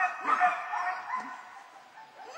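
A young puppy gives several short, high-pitched yips and whines in quick succession in the first second or so. It is vocalising while it grips and tugs a rag in defence bite training.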